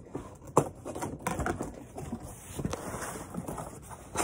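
Cardboard shipping box being handled and opened: a few sharp clicks and knocks and a stretch of cardboard scraping as the plastic packing strap comes off and the box is tipped over.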